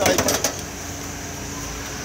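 LPG pump nozzle clattering as it is lifted out of its holder on the pump: a quick rattle of metal clicks in the first half second, then a steady low hum.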